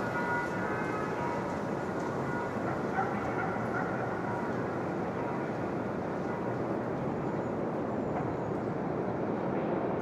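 City ambience: a steady, distant hum of traffic, with faint dog barks a few seconds in.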